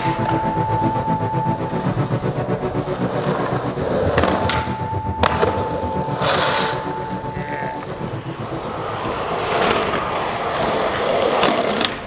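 Skateboard wheels rolling on pavement with the clack of board tricks, mixed with a music soundtrack of steady held synth tones.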